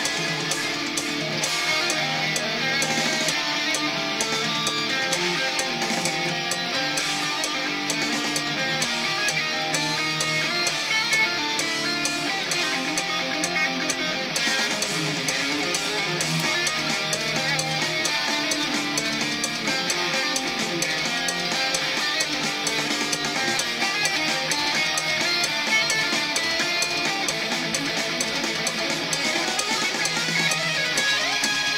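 Electric guitar playing metal riffs and lead lines, continuously.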